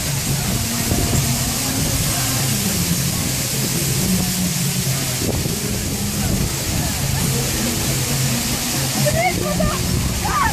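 Procession kirtan: a group chanting in long held notes with musical accompaniment, over a steady hiss of wind and crowd noise. Near the end a nearby voice briefly rises over it.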